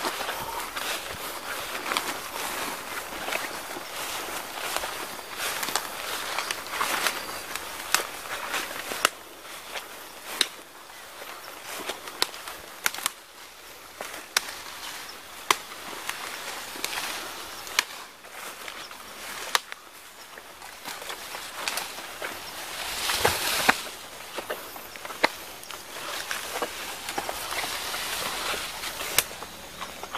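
Footsteps through dense leafy undergrowth, with leaves and stems swishing against the walkers and sharp crackles of twigs and dry leaves underfoot. A louder rush of brushed foliage comes about two-thirds of the way through.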